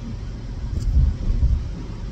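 Low rumble of a moving car's road and engine noise heard inside the cabin, swelling briefly about a second in.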